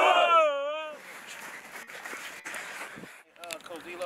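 A football team breaking the huddle with one loud shout in unison on the count of three. The shout is held for about a second and trails off, leaving a softer open-air hubbub. A voice starts talking near the end.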